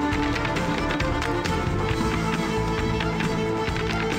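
Upbeat Irish dance music with the quick, rhythmic clicks of Irish dancers' shoes striking a hardwood floor in time with it.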